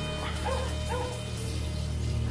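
A dog whimpering twice, two short rising-and-falling calls, over a low, steady music bed.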